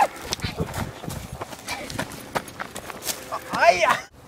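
Irregular thuds and scuffs of people moving on a dirt trail, with a short shout near the end.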